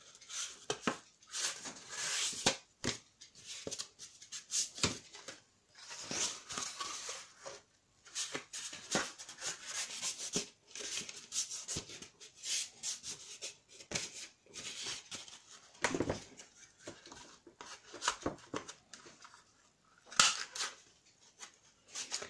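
A handheld corner punch cutting the corners of kraft cardstock: a series of sharp clicks at irregular intervals, with paper rustling and scraping as the card is turned and handled between cuts.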